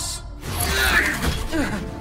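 Cartoon sound effect of robot machinery moving: mechanical whirring and ratcheting like servos and gears, with music underneath.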